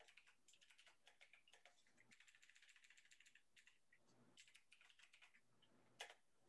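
Faint computer keyboard typing: irregular key clicks, with a quick, dense run of keystrokes for about a second in the middle.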